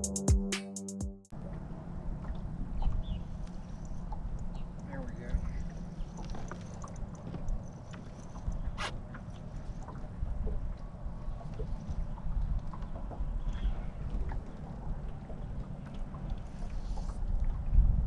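Background music that cuts off about a second in, then a steady low rumble of wind on the microphone aboard a boat, with water lapping at the hull and scattered faint clicks, one sharper click near the middle.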